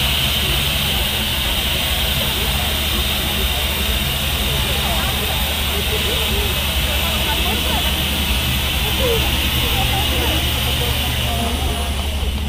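Steady low hum and hiss of a fairground tower ride's machinery, with faint voices in the background.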